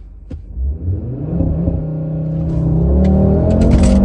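2022 Audi RS3's 400 hp turbocharged 2.5-litre five-cylinder engine pulling hard from a launch-control start, heard inside the cabin. The engine note climbs and grows steadily louder, with a few sharp cracks near the end.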